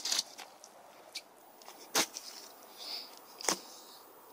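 Dry leaf litter and twigs crunching on the forest floor, three sharp crunches with a few fainter crackles between them.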